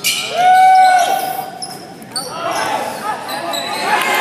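Spectators in a gym hall shouting: one long held yell near the start, then several voices calling out in short rising-and-falling cries, with a basketball bouncing on the hardwood floor.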